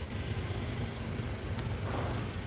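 Steady low hum and hiss of a large store's background air handling.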